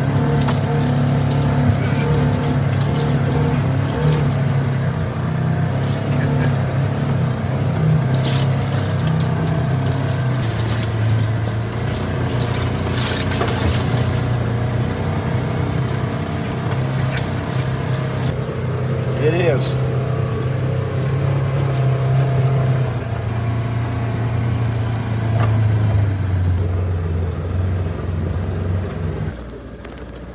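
Gasoline engine of a Polaris side-by-side utility vehicle running under load as it climbs a steep, rough dirt trail. The engine note holds steady, then settles a little lower in the second half. A few sharp knocks come about 8 and 13 seconds in, and the sound drops away just before the end.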